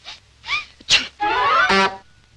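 Cartoon kitten's vocal effects: a short mew, then a sharp sneeze just before a second in, after a spray of perfume in the face. A longer, loud, buzzing cry follows over the cartoon's music.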